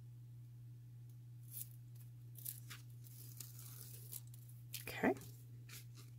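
Faint, short rustles and a peeling sound as the red liner is peeled off double-sided tear tape stuck around the rim of a paper cup lid, over a steady low hum.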